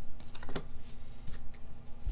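Light clicks and rustles of trading cards and a foil booster pack being handled, with one sharper click about half a second in.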